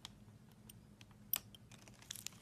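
Scattered small clicks and ticks from a surgical instrument and gloved fingers working in a small hand incision, with one sharper click about two-thirds of the way through, over a low steady hum.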